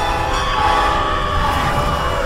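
A train's air horn sounding one long, steady blast of several tones together, with a low rumble underneath.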